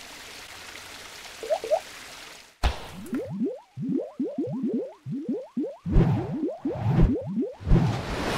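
Cartoon sound effects for an animated logo sting: a steady whooshing hiss, then a sharp hit about two and a half seconds in, followed by a quick run of short rising bloops, about three a second, with heavier low thumps near the end.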